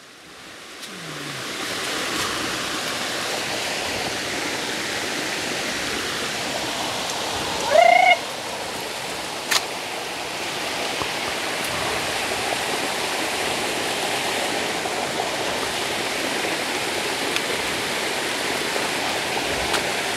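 Rushing water of a waterfall, a steady hiss that rises over the first two seconds and then holds. About eight seconds in, a short, loud, rising call cuts through it, followed by a single click.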